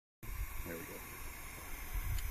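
Low, uneven rumble on the microphone under a steady hiss, with one faint short voice sound just under a second in.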